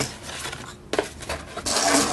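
Handling noise as a cardboard box with a foam insert and a BB pistol are moved about on a table: rubbing and scraping, with a short sharp knock about a second in.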